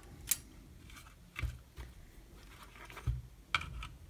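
Faint handling noises from taking apart a small electronics unit: a small click as a two-pin wire connector is pulled off the circuit board, then a couple of soft low knocks and a sharper click as the fan-and-heatsink assembly is set down and a screwdriver is brought to its screws.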